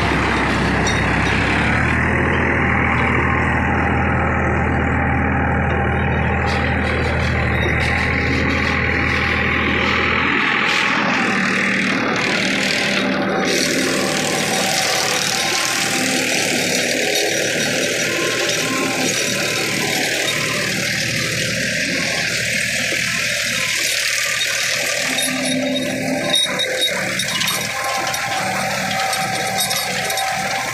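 Tractor diesel engine working under load while driving a gear-drive rotavator through its PTO shaft, with the rotavator's gearbox and blades churning the soil in a steady mechanical din. The deepest part of the engine hum drops away about ten seconds in.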